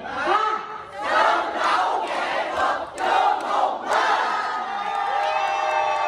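A large crowd shouting and cheering together. A short shout comes at the start, a dense burst of many voices follows, and near the end comes a long, drawn-out cheer that slowly falls in pitch.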